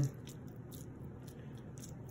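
Metal tongs spreading shredded cooked chicken over a sauce-covered flatbread: faint soft squishing with scattered light clicks.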